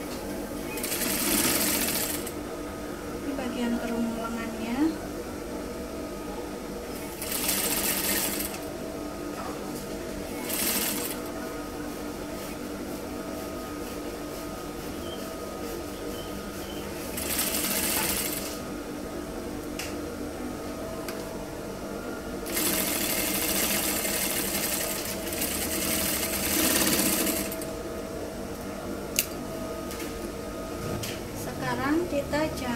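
Industrial single-needle lockstitch sewing machine stitching through fabric in short runs of one to two seconds, then a longer run of about five seconds, with a steady hum between runs and a couple of sharp clicks.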